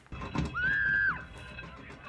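Film soundtrack: a single high, steady tone held for about half a second, gliding up at its start and down at its end, over quiet background music.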